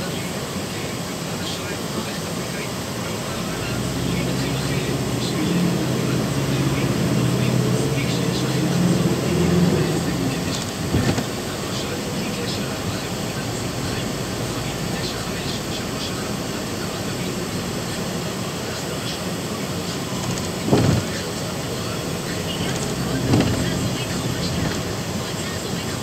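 Steady road and engine noise heard inside a moving vehicle, with a stronger low engine hum for several seconds in the first half and a few brief knocks later on.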